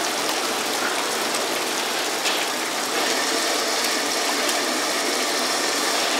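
Steady rushing noise of a hawker stall's gas burner flame under a pot of soup, with a faint click a little after two seconds in.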